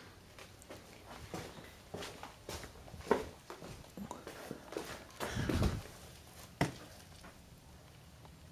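Footsteps and scuffs on a concrete floor with light handling knocks, one louder low scuff about five seconds in.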